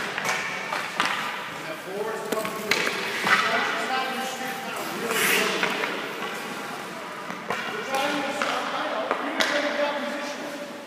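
Indistinct voices echoing in a large ice rink, with scattered sharp knocks, such as sticks and pucks striking the ice, and a brief hissing scrape about five seconds in.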